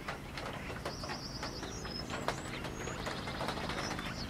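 Small birds calling: a rapid run of high-pitched chirps about a second in, then short high whistles, over faint scattered clicks.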